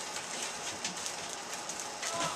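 Thin plastic bags crinkling and rustling as toys sealed in them are picked up and handled, a quick irregular run of small crackles.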